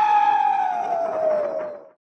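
A logo sting sound effect: a long wailing tone that swoops up twice, then holds and slowly falls in pitch as it fades out.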